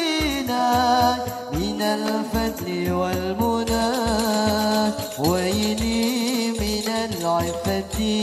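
Islamic devotional song (sholawat) performed by a hadrah group: a lead singer's long, ornamented vocal line gliding up and down in pitch over hand drums beating a steady rhythm.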